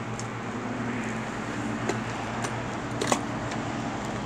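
Steady background hum, with a few faint clicks as gear in a canvas haversack is handled, about two, two and a half and three seconds in.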